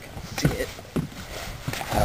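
Footsteps on a bass boat's deck: a few irregular knocks, with a burst of rustling near the end as the camera is handled.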